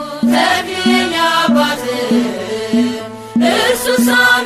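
Ethiopian Orthodox mezmur (hymn) sung in Amharic by a solo voice over a steady low beat. The singing breaks off briefly about three seconds in and comes back strongly near the end.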